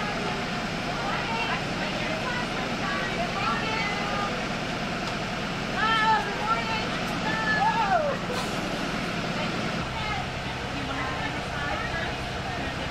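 School bus engines idling in a steady low hum at the curb, with children's and adults' voices calling out over it, loudest around the middle. The hum changes a little before the end.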